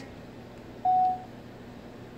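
A single short electronic beep: one steady mid-pitched tone about a second in, lasting under half a second.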